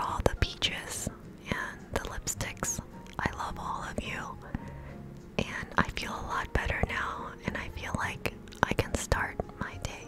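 A woman whispering close into a microphone, ASMR-style, with many short sharp clicks between the whispered words.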